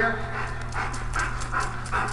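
German shepherd panting hard, quick short breaths, over a steady low hum.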